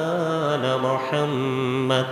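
A man's voice chanting Arabic praises of the Prophet through a microphone, in long held melodic notes that step to a new pitch after a short break about a second in.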